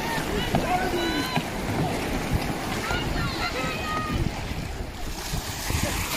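Wind buffeting the microphone over surf and paddle splashing as a dragon boat crew paddles away, with scattered distant shouts from the crew.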